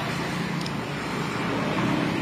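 Steady background motor-traffic noise, an even rush with a faint low hum and no distinct events.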